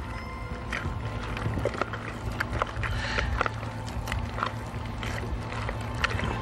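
Wet squelching of a hand kneading raw ground chicken mixed with eggs in a plastic tub: irregular short squishes and slaps over a steady low hum.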